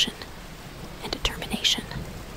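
Soft spoken narration, partly breathy, with a hissy 's' sound near the end.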